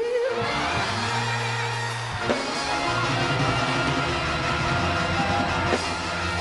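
Live gospel praise-break music from a church band, with drums and bass guitar playing steadily, and a couple of sharp drum hits.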